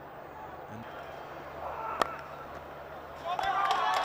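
A cricket bat striking the ball: one sharp crack about two seconds in, over a low stadium background. About a second later a crowd starts shouting and cheering as the shot runs to the boundary.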